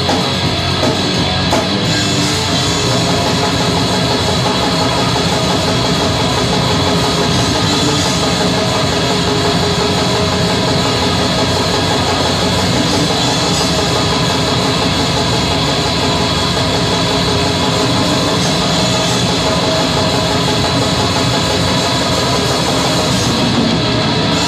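Black metal band playing live: distorted electric guitars, bass and a drum kit in a dense, unbroken wall of sound at steady loudness.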